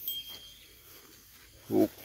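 A short, low call from one of the grazing cattle, close by, about a second and a half in. It follows a soft knock at the start.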